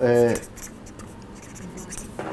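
A pen scratching faintly as an autograph is signed, after a man's voice stops about half a second in.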